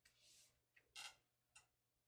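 Near silence with a soft rustle and a few faint brief ticks, from a hand moving on the pages of a hardcover picture book.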